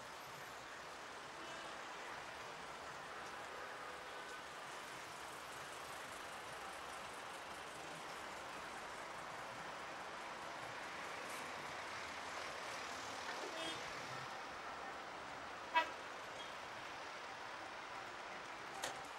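Steady city traffic noise, the hiss of passing cars, with a brief car horn toot a little before the end. About 16 s in there is a single sharp click of a car door latch as the driver's door is opened.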